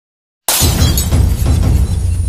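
Silence for about half a second, then a sudden loud glass-shattering sound effect over a deep bass of intro music.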